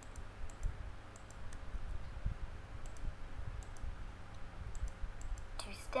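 Computer mouse clicking irregularly, a dozen or so clicks, several in quick pairs, as letters are picked one at a time.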